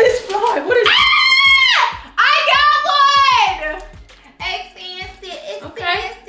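Excited high-pitched squealing and shrieking from two women: a long drawn-out squeal about a second in and another just past two seconds, then laughter and excited chatter.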